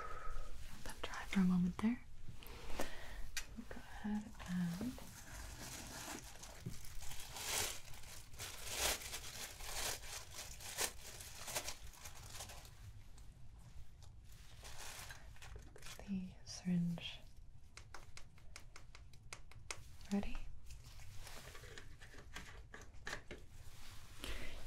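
Packaging crinkling and being torn open, then a long run of small, quick clicks and crackles. A few short murmured hums come in between.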